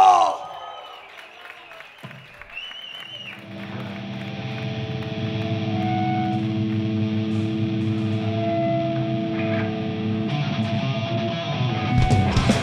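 Distorted electric guitars holding a long sustained chord that swells up a few seconds in and rings steadily, after a shouted vocal line cuts off at the very start.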